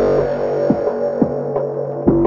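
Deep liquid drum and bass music: a held low bass note and sustained chords, with a deep drum hit about every half second. The higher percussion thins out in the second half.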